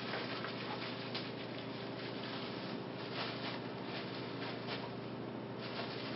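Light handling noise: faint rustling and small scattered clicks as a Daystar Quark is taken out of its twist-tube packaging by hand, over a steady low room hum.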